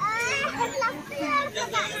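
Children's high-pitched voices calling out loudly, starting suddenly and running on in short broken phrases.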